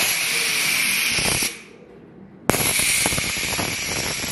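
Haunted-house scare effect: a jet of compressed air hissing in two loud blasts. The first lasts about a second and a half, and the second starts suddenly a second later and keeps going.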